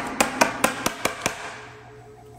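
A quick run of about seven light, sharp taps, about five a second, the first the loudest, stopping after about a second and a half.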